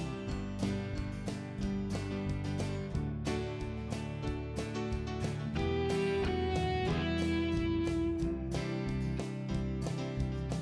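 Background music led by strummed guitar with a steady beat.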